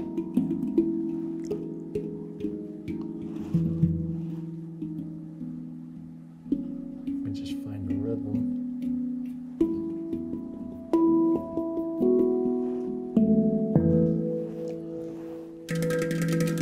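Steel handpan notes struck by hand at uneven intervals, each ringing on and fading while the next sounds, with no steady rhythm.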